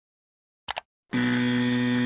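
Sound-effect track of an animated logo graphic: two quick clicks, then a steady buzzy synthesized tone held for about a second.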